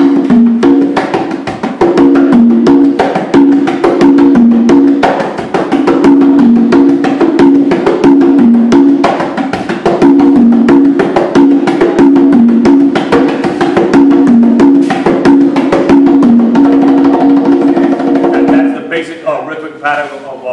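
Congas played with bare hands in a steady, dense rhythm of strokes whose tones step between a few low pitches: a demonstration of an African-rooted folkloric drum rhythm. The drumming stops shortly before the end.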